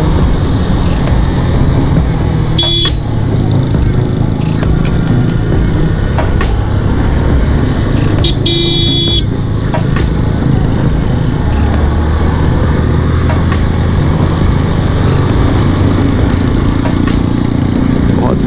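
Motorcycle engine running steadily under way in road traffic. A horn sounds twice, briefly about three seconds in and for about a second around nine seconds in.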